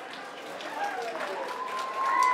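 Light applause and crowd noise from an outdoor audience just after a brass band's final note, with a steady high tone starting about a second in.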